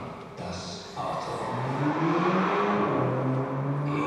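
A man's low voice, drawn out in long, slowly gliding sounds, starting about a second and a half in after a quieter first second.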